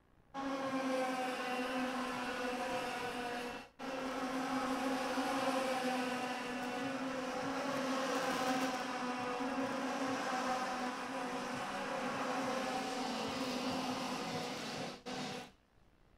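IAME X30 125 cc two-stroke kart engines of the racing pack, running together at high revs as a steady, high-pitched drone. The sound cuts out briefly at about four seconds and again near the end.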